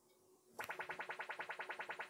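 Valve AM tuner's audio output reproducing a swept test tone that starts at the low end of the sweep. It comes in about half a second in as a rapid, even buzzing pulse, about fifteen a second.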